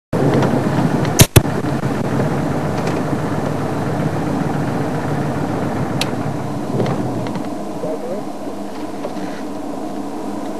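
Game-drive vehicle's engine running, a steady rumble, with two sharp loud clicks about a second in and a lighter click at about six seconds; the low rumble eases off in the last few seconds.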